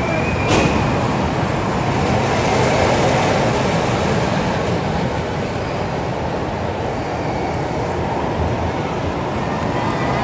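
Steady, loud rumbling din of ride machinery and crowd noise in a large indoor amusement park hall, swelling slightly a few seconds in. A sharp click comes about half a second in.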